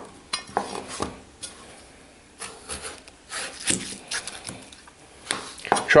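Kitchen knife slicing through a peeled raw potato and knocking down onto a plastic cutting board: a dozen or so sharp, irregular knocks.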